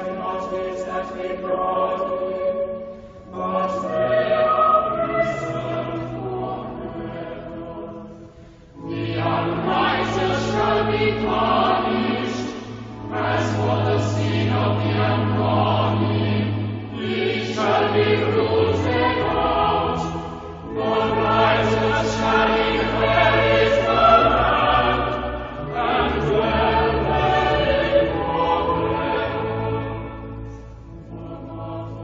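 Choir singing sacred music in phrases of about four to five seconds with short breaks between them, over sustained low accompanying notes.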